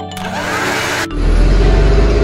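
Sound effects: a hissing whoosh for about a second, then a loud low engine-like rumble that starts suddenly and holds steady.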